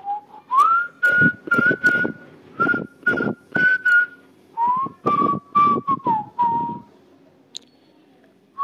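Background music with a whistled melody over a simple percussion beat. The whistled line rises and holds high, then a lower phrase falls away, and it stops about a second before the end.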